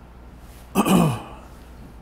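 A man clearing his throat once, about three-quarters of a second in, the sound dropping in pitch as it ends.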